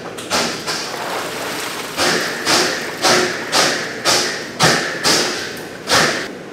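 Wire baskets of beef knocking in a stainless-steel tank of steaming water: a few scattered knocks, then from about two seconds in a regular run of thuds, about two a second.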